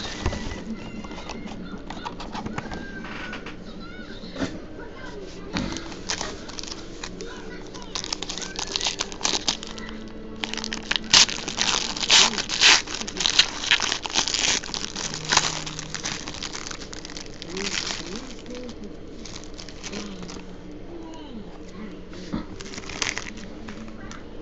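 Foil trading-card pack being pulled out and torn open, its wrapper crinkling in a run of crackly rustles that is busiest in the middle.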